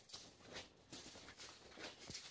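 Near silence, with a few faint, soft footfalls about every half second.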